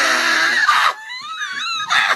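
A young man's loud, breathy, drawn-out wail ('ohhh') of mock dismay. About a second in it turns into a high, wavering falsetto whine.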